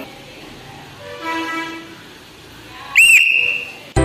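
A sports whistle blown once, a short shrill blast with a warbling trill at its start, about three seconds in. It is the teacher's signal to start the game.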